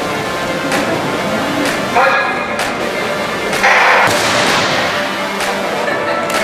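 A starter's pistol shot in an indoor athletics hall: one loud bang about three and a half seconds in, followed by a long echo. Background music with a steady beat runs underneath.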